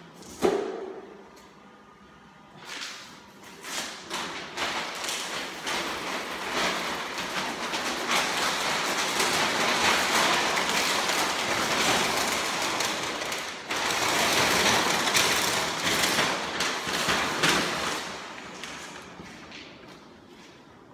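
A large sheet of Proflex flooring underlayment membrane being unrolled, flipped and laid on a concrete floor: loud, continuous rustling and crackling of the sheet, strongest through the middle and easing off near the end. A single sharp thump comes about half a second in.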